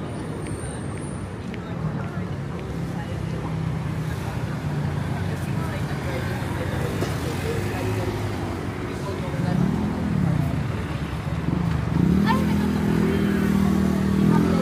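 City street traffic: vehicle engines running at a crossing, one revving up and back down about ten seconds in, then a motor scooter's engine growing louder near the end, with people's voices in the background.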